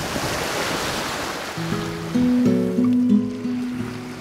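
Sea water rushing along a sailing boat's hull as the bow cuts through the waves. About a second and a half in, background music of sustained low notes comes in over it and becomes the loudest sound.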